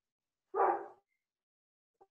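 A single short dog bark.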